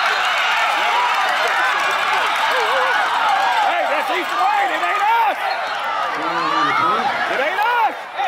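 Many voices shouting and talking over one another at a football game, players, coaches and spectators mixed into a din with no single speaker clear. The din thins in the second half, leaving a few separate voices calling out.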